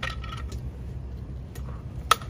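Light metallic clinks and clicks as an air-aspirating foam tube is fitted onto a fire-hose fog nozzle: one sharp clink at the start, then fainter ticks about half a second and a second and a half in.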